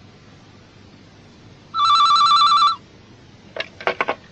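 Telephone ringing: one warbling electronic ring about a second long, the call that is answered by the school receptionist. A few short clicks follow about a second later.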